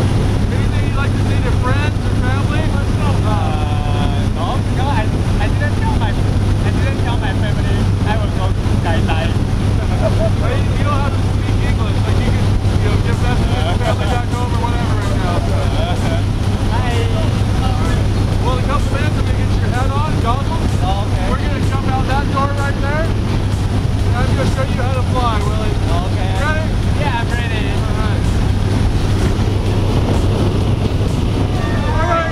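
Small airplane's engine droning steadily, heard from inside the cabin in flight, with muffled voices over it.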